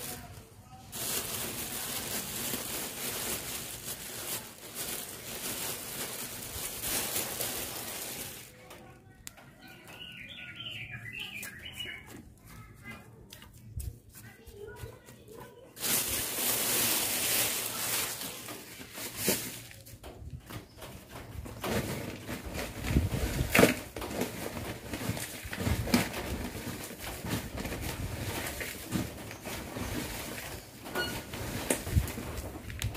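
Rustling and scraping of dry potting media being handled, with small birds chirping through a quieter stretch in the middle, then scattered knocks and clicks in the last third.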